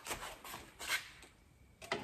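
Faint handling sounds as a magnetic tailgate cover panel is carried and lifted into place: a few light knocks and rustles in the first second, then near quiet.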